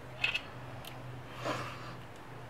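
Quiet room tone with a steady low hum and small handling noises: a few faint clicks near the start and a soft rustle about a second and a half in.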